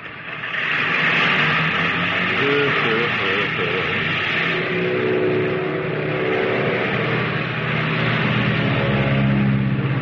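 Sound effect of airplane engines running as the plane takes off: a steady hissing roar with a low drone beneath, the drone growing stronger near the end. A man gives a brief laughing "ooh, ooh" about four seconds in.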